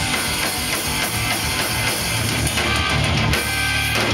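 Live rock band playing an instrumental passage: electric guitars and drum kit at a steady, loud level, with no vocals.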